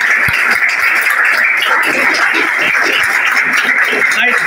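A roomful of people applauding, with steady clapping throughout.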